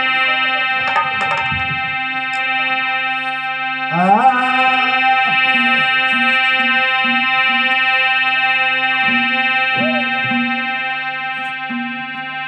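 Harmonium music from the stage band: a chord held steadily throughout, with a rising slide about four seconds in and short repeated melody notes over the drone after that.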